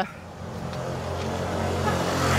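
A motor scooter coming up from behind and passing close by, its engine hum growing steadily louder.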